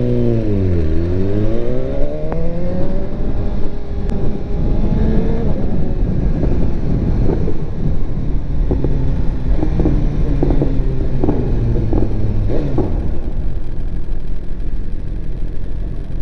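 2018 BMW S1000RR inline-four engine under way. Its pitch drops for about a second, then climbs for about three seconds as the bike accelerates, then runs steadily at lower revs with small rises and falls.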